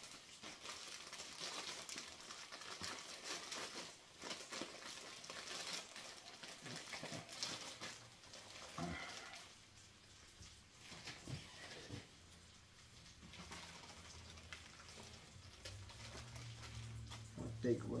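Plastic bag of shredded coleslaw mix crinkling as it is handled and opened. The crinkling dies down about halfway through, leaving a faint low hum.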